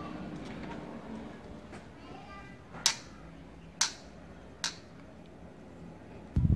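Three sharp clicks, about a second apart, over a faint background hum.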